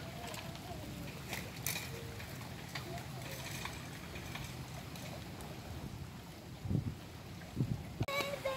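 Steady low wind rumble on the microphone over churning spring-fed pond water, with faint distant voices. Two low bumps near the end.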